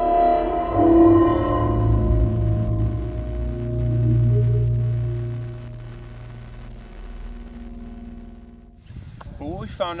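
Title music: a sustained chord of steady tones over a deep low rumble, loudest in the first few seconds and then fading away. A man's voice starts near the end.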